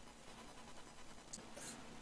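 Near silence: faint hiss of room tone, with two brief faint scratchy sounds near the end.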